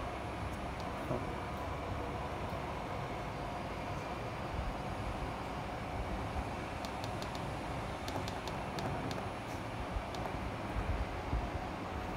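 Syil X5 CNC mill's Z axis jogging upward under power, a steady mechanical running noise of the axis drive. A few light clicks come about seven to nine seconds in.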